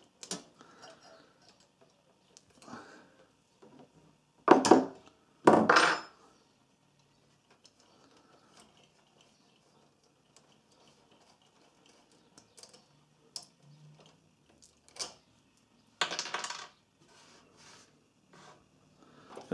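Steel spanners clinking on a nut and the welder's sheet-metal cabinet while the earth cable's terminal nut is undone, with small metallic ticks and taps throughout. Two loud sharp clanks come about four and a half and five and a half seconds in, and a longer scraping sound near the end.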